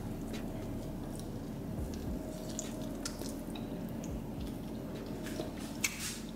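A soft, cheese-filled stuffed biscuit being pulled apart by hand and bitten into, with faint squishing and chewing. A short sharp click comes near the end.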